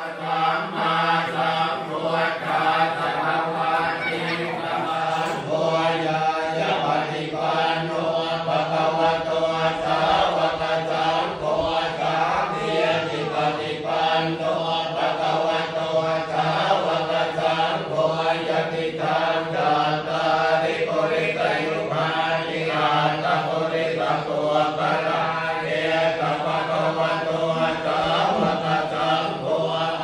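Thai Buddhist monks chanting Pali blessing verses (paritta) in unison: a steady low monotone that runs without pause, the syllables moving in an even rhythm above it.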